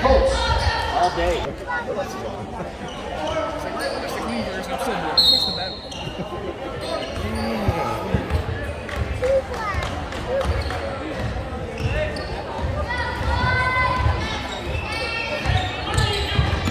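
A basketball dribbled on a hardwood gym floor during a game, repeated low bounces in a large, echoing hall, with spectators talking.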